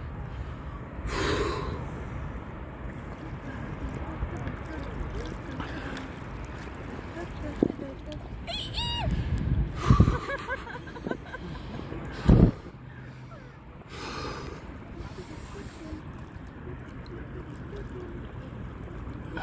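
Cold-water swimmers in the sea gasping and breathing hard from the cold, with water sloshing over a steady wash of wind and water noise. A few short, loud gasps stand out about ten and twelve seconds in.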